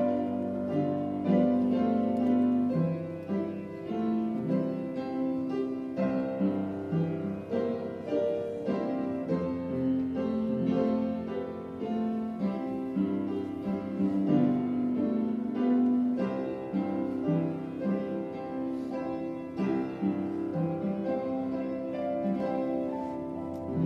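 Instrumental hymn music played on piano, a continuous flow of sustained notes and chords accompanying a time of prayer.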